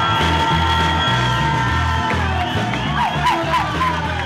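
Band music with a steady, pulsing bass beat and long held high notes that bend and waver near the end, with a crowd cheering and whooping.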